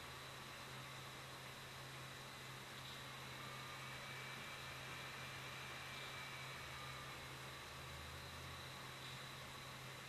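Faint, steady hiss with a low hum underneath: the background noise of the recording, with no distinct sound event.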